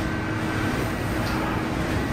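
Steady operating-room background hum and hiss from air handling and equipment, with a faint steady tone running through it.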